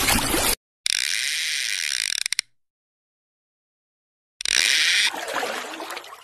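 Edited-in intro sound effects: bursts of hissing noise, the second ending in a quick run of clicks. About two seconds of silence follow, then another burst of noise that fades away.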